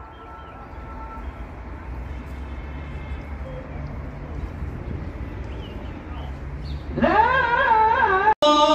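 Outdoor ambience with a low rumble; a held chanted note fades out about a second in, and about seven seconds in a man's voice starts a long, wavering, melismatic chanted phrase, typical of a muezzin's call to prayer.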